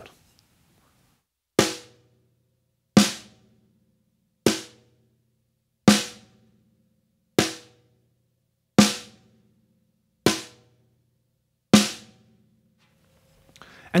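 Snare drum struck with single strokes, eight in all about every second and a half, each ringing out briefly. The strokes alternate between a regular wooden drumstick and a Promark Thunder Rod (a bundle of thin dowels), and every other stroke is clearly louder.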